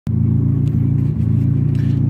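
Car engine idling with a steady low drone, heard from inside the cabin.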